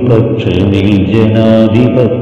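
A voice singing a Malayalam patriotic song in a chant-like style over musical backing, holding long notes that glide from one pitch to the next.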